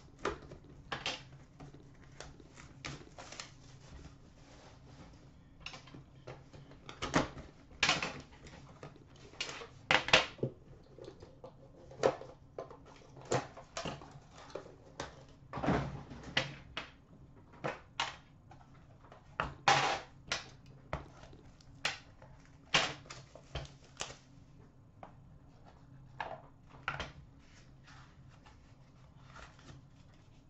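Irregular clicks, knocks and rustles of hands unwrapping and opening a metal trading-card tin and pulling out its cardboard inner box, with a few sharper knocks among them.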